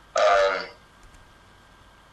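A man's short vocal sound, about half a second long near the start, then faint steady hiss.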